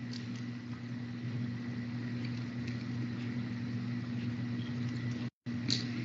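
A steady low electrical-sounding hum with a faint high whine over a light background hiss, carried through an open voice-chat microphone, cutting out to silence for a moment a little after five seconds.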